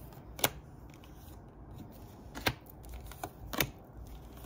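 Tarot cards being laid down on a wooden table: a few separate sharp card snaps, about half a second in, about two and a half seconds in, and near the end.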